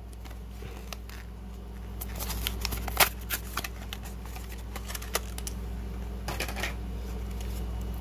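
Clear plastic blister packaging crackling and clicking as it is handled and pried open. The sharpest click comes about three seconds in.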